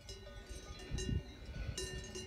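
Cowbells on grazing cows clanking irregularly, each strike ringing on, with fresh clanks near the start, about a second in and near the end. A low rumble comes about a second in.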